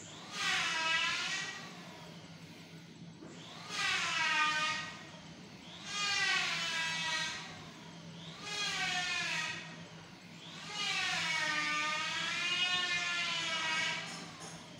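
An electronic siren-like tone sounds five times, each sweep dipping down and rising back up in pitch, the last one longer and wavering, over a steady low hum.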